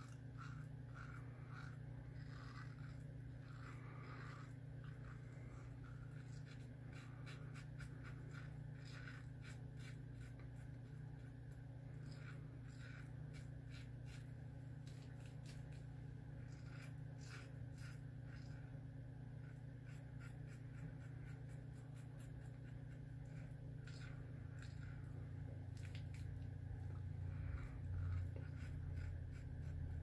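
Faint, short scratchy scrapes of a King C. Gillette double-edge safety razor cutting lathered stubble, stroke after stroke, over a steady low hum. The Astra blade is on its fifth use, still cutting well but beginning to lose its edge.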